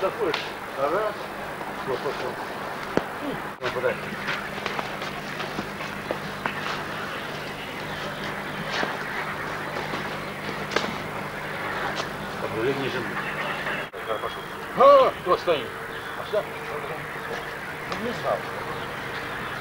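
Indistinct men's voices in short, scattered phrases on old camcorder sound, the loudest about fifteen seconds in, over a steady low hum and hiss from the tape, with a few faint clicks.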